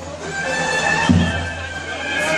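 Festive folk music: a shrill reed pipe holding wavering high notes over a deep drum, with one heavy drum stroke about a second in.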